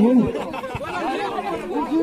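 Several people talking at once in casual chatter, with one voice loudest at the start.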